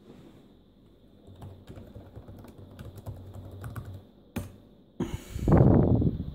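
Keys being typed on a Dell Inspiron 6000 laptop keyboard, a run of light clicks with one sharper key press a little past four seconds. A louder, lower noise follows about five seconds in.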